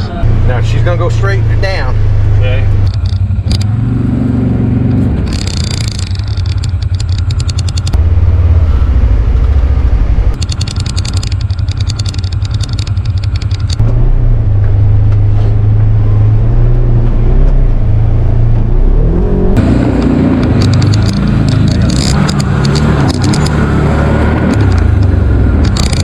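Side-by-side UTV engine running as the machine drives through a tall, overgrown field, its level rising and falling with throttle and terrain.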